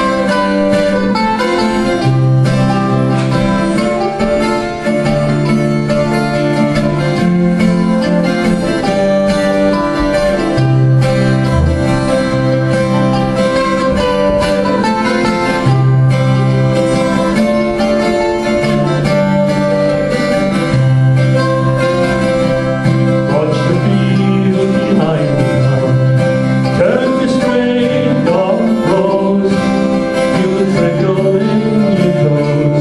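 Mandolin and twelve-string acoustic guitar playing a folk song together, the guitar strummed and the mandolin picked.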